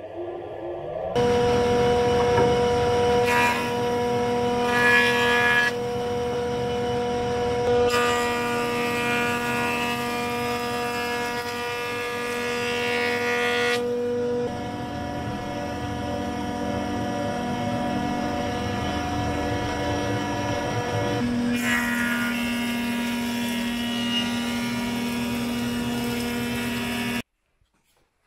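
Woodworking machinery running: a motor spins up at the start, then a steady motor hum goes on under the noise of a jointer cutting a rough-sawn beam passed over its cutterhead. The sound changes abruptly several times and cuts off sharply near the end.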